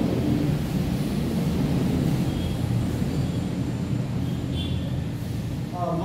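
A steady low rumbling noise with no clear tones or strikes. Voice-like sound begins again right at the end.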